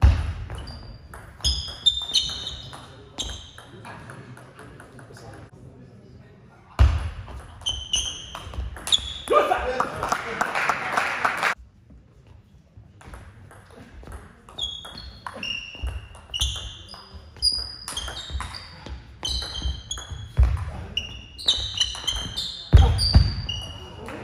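Table tennis rallies: the plastic ball clicking quickly off the rubber bats and the table, and sports shoes squeaking in short high chirps on the hall floor. A loud voice rises briefly after each point, about ten seconds in and near the end.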